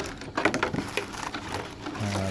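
A few light clicks and knocks of metal parts being handled: the charger's steel mounting brackets being moved about.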